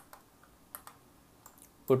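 About half a dozen light, scattered clicks from operating a computer's keyboard and mouse. A voice starts to speak at the very end.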